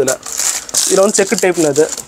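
Plastic shirt packets crinkling and rustling as they are handled, with a man's voice speaking over it through the second half.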